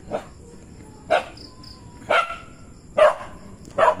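A dog barking, five single barks about a second apart.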